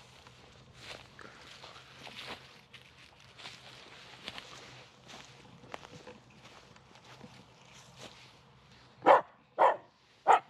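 Footsteps crunching and rustling over dry pine needles and grass, then two short, loud barks from a Finnish Spitz near the end, about half a second apart.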